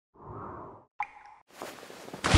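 Cartoon sound effects for an animated logo: a soft whoosh, then a short, bright plop about a second in, followed by a building hiss.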